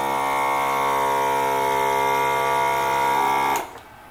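Screen-printing vacuum table's suction motor running with a steady, even hum, switched on to hold the substrate flat; it cuts off suddenly about three and a half seconds in.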